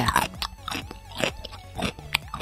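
Someone biting into and chewing a bread bun: a handful of short, crunchy chewing noises spread through the two seconds.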